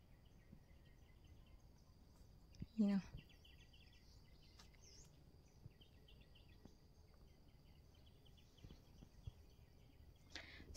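Faint outdoor ambience with distant birds chirping in short, scattered high calls over a faint steady high whine.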